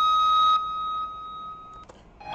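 Electric guitar holding one high note that rings steadily for about half a second, then fades and is cut off with a small click near the end.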